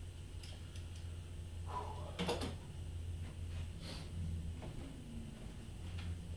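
Handling noise as a harmonica neck holder is lifted off over the head and gear is moved: scattered clicks and a louder metal clatter about two seconds in. Under it runs a steady low electrical hum.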